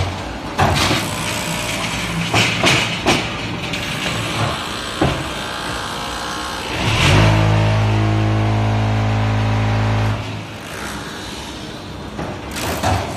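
Concrete block making machine at work: irregular metal clanks and knocks from the steel frame and pallets, then about seven seconds in a loud steady hum for about three seconds, typical of the vibration table compacting the concrete in the mould, cutting off suddenly before more clanks.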